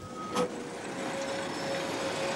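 A diesel locomotive running, a steady engine and rolling noise with a faint steady hum, growing slightly louder; a short click about half a second in.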